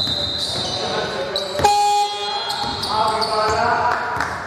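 A basketball bouncing on a hardwood court in a large, mostly empty arena, with players' voices. About one and a half seconds in there is a sharp knock, followed by a brief steady buzzing tone.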